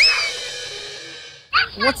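A quick rising whistle swoop followed by a ringing, cymbal-like metallic shimmer that fades away and cuts off about a second and a half in: a sound-effect sting marking a scene change.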